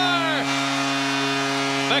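Arena goal horn sounding one long, steady low tone after a Tampa Bay Lightning goal.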